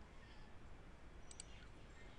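Near silence with two faint, quick computer mouse clicks close together a little after a second in.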